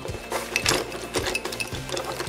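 Metal wristwatches and watch parts clinking and rattling against each other as a hand rummages through a pile of them in a cardboard box, a string of irregular sharp clinks.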